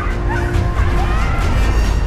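Birds calling in short, squawking upward and downward glides, several overlapping, over loud, low-pitched trailer music.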